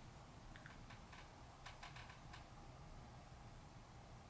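Near silence: room tone, with a few faint clicks in the first half.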